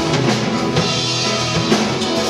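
Live rock band playing an instrumental passage: drum kit with snare and bass-drum hits under strummed acoustic guitar, electric guitar and bass.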